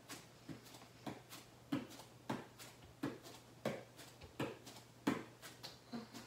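Hands tapping alternately on the shoulders and back down on a foam exercise mat during plank shoulder taps: soft, faint taps about every two-thirds of a second.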